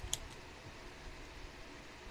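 A single short, sharp click just after the start, from the horn relay and jumper-wire test hookup being disconnected, followed by a faint tick. After that only a low steady room hum remains.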